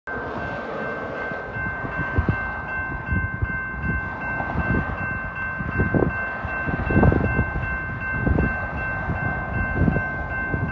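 Railroad grade-crossing warning bell ringing steadily as a train approaches, with irregular low gusts of wind buffeting the microphone.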